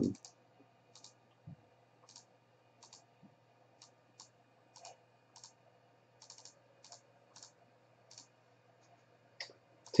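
Faint clicking of a computer mouse and keyboard: short single clicks, irregular, roughly one or two a second, over a faint low hum.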